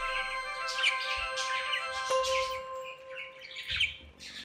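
Budgerigars chirping in short repeated calls over soft background music of long held notes.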